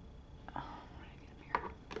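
A woman whispering a few short words.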